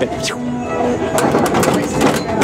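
Carousel music playing, with long held notes, and a few sharp clicks in the second half.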